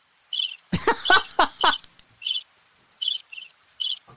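Recorded cricket chirping played as a sound effect, short high chirps about two a second: the comic 'crickets' gag for an awkward silence. A person's voice breaks in briefly about a second in.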